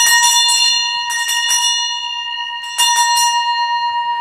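Altar bell (Sanctus bell) at Mass, shaken in two bursts, one at the start and another nearly three seconds in, its ring carrying on between them. It marks the epiclesis, as the priest extends his hands over the offerings before the consecration.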